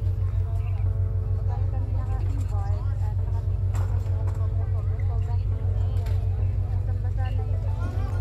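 A large engine running steadily, a deep, even hum, with people's voices talking in the background.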